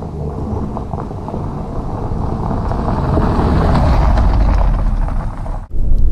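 Jeep Renegade with its 1.0-litre three-cylinder turbo petrol engine approaching on a gravel road: engine rumble and tyres crunching over gravel, growing louder as it nears, loudest about four to five seconds in. The sound cuts off near the end.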